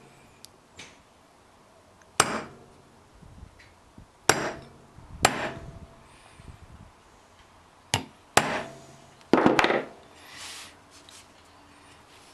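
A hammer striking a punch against an aluminium cylinder head: a handful of sharp taps a second or two apart. The punch is peening the aluminium around the edge of a newly installed heli-coil so it pinches in and won't turn.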